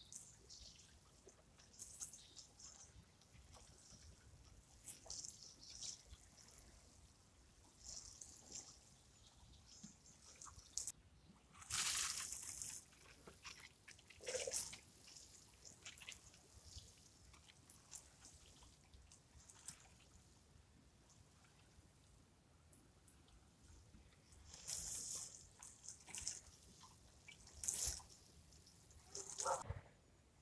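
Water falling from a watering can's rose onto bare soil and seedlings, a faint patter and hiss with a few louder spells of spray about twelve seconds in and again near the end.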